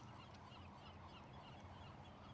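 A large flock of birds, a thousand or more, all chirping at the same time: a faint, dense chatter of many overlapping calls.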